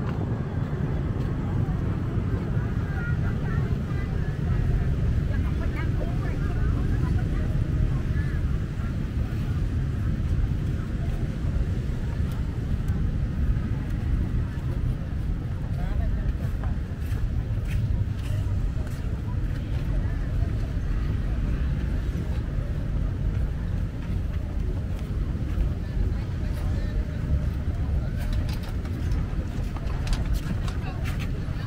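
Busy city street ambience: a steady low rumble of road traffic, with voices of passersby.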